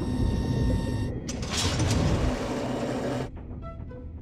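Sound effect of a submarine's retrieval claw hatch sliding open and the claw mechanism whirring out, with a low hum and hiss. It breaks off briefly about a second in, resumes, and stops about three seconds in, leaving faint background music.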